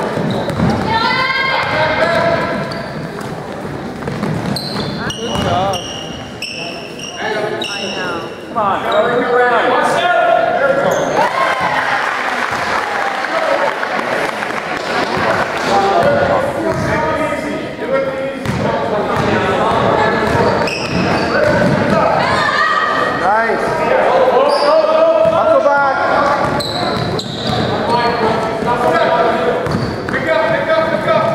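Basketball game in a gym: the ball bouncing on the hardwood floor, sneakers squeaking a few seconds in, and players' and onlookers' voices calling out, all echoing in the large hall.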